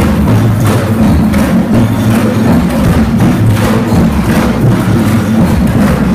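A children's percussion band of large strapped drums and hand-held percussion playing a loud, steady rhythm: regular deep drum beats under sharp, clicking strokes.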